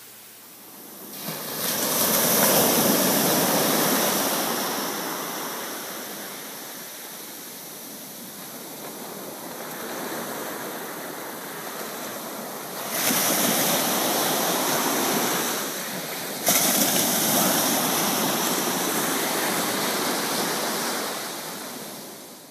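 Small ocean waves breaking and washing up a sandy beach, the surf swelling and fading in long surges. It starts about a second in and jumps suddenly louder twice, about halfway through and again a few seconds later.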